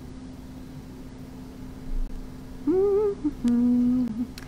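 A woman humming with her mouth closed while she waits: a short wavering phrase in the second half, then one held note. A soft low thump comes about halfway through, and a steady low background hum runs underneath.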